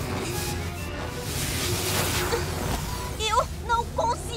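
Cartoon electricity sound effect: a continuous crackling, buzzing surge of power over a low hum, with music underneath. In the last second a girl's voice cries out in wavering, straining tones.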